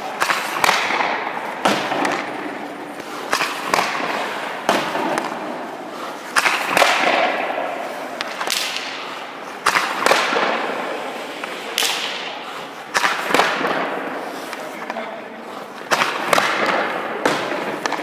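Ice hockey pucks shot one after another with a stick at a goalie: sharp cracks, often in close pairs of the shot and the puck striking the goalie's pads, about every one to two seconds. Each crack echoes in the ice rink.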